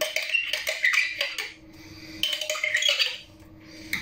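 Glass jar being tapped and scraped as cranberries are emptied out of it into a pot of red cabbage: two bursts of clinking and scraping with a short lull between.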